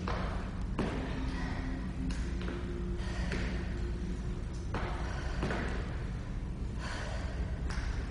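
Sneakers thudding on a wooden studio floor as a person steps back and forward through alternating lunges, a thud every second or so, with hard breathing between, over a low steady hum.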